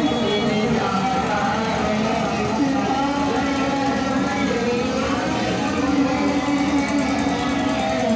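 A devotional song with a singing voice, playing over the float's horn loudspeakers. The voice holds long, wavering notes, over street and crowd noise.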